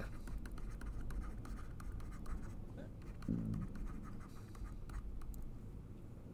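Stylus scratching and tapping on a drawing tablet while a name is handwritten, a run of light quick strokes and clicks. A man's voice gives a brief murmur about halfway through.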